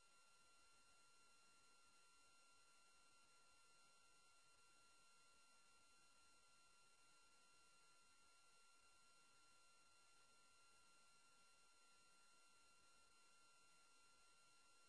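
Near silence: only a faint steady hiss with a few thin high tones from the recording's noise floor.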